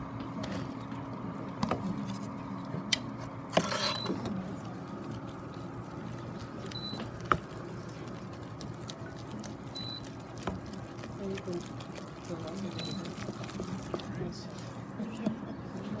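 Wooden spoon stirring flour into boiling water and butter in a stainless steel saucepan, beating it into choux dough, with scattered clicks and knocks of the spoon against the pan and a rougher burst about four seconds in. A short high beep sounds about every three seconds.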